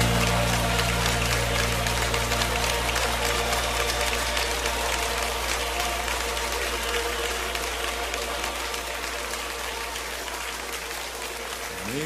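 A crowd applauding as the last held chord of a worship song dies away, the applause slowly fading over a steady low hum. Right at the end a new song begins with a rising note.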